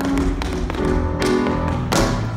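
Tap shoes striking the stage floor in a tap-dance solo: several sharp taps over a recorded pop song that is louder than the taps.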